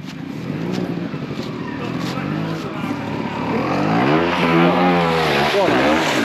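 Trials motorcycle engine revving up and down as the bike works through a deep mud rut. It grows louder as it approaches and is loudest over the last two seconds.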